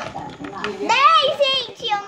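A young girl's voice, high-pitched and rising and falling, loudest for about a second in the middle.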